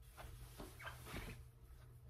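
Bedding rustling and swishing in short, irregular bursts as sheets are pulled off a bed, over a steady low hum.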